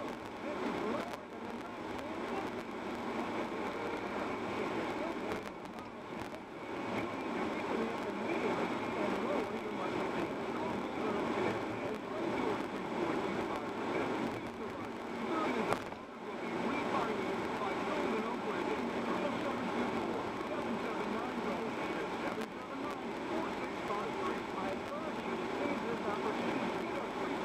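Steady road and engine noise inside a moving car on a highway, with a brief dip about 16 seconds in.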